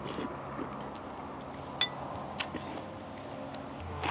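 Tableware clinking during a meal of pho: two sharp clinks, a little over half a second apart, near the middle, the first ringing briefly, over soft steady background noise.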